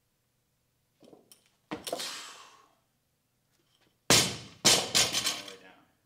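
A barbell with rubber bumper plates dropped onto a rubber gym floor about four seconds in: a heavy bang, a second bang as it bounces half a second later, then a fading rattle of plates on the bar. A sharper thud with a ringing tail comes just before two seconds in, during the power clean itself.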